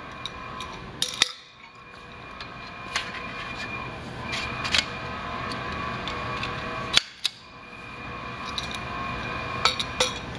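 Sectional metal poles of a banner stand being handled and pushed together, giving scattered sharp clicks and clinks as the sections meet and snap into place. The sharpest clicks come about a second in and again about seven seconds in, over a steady low room noise.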